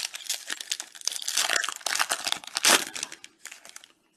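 Foil wrapper of a 2021 Bowman Chrome HTA card pack crinkling and crackling as hands work it open, thinning out to a few light crackles near the end.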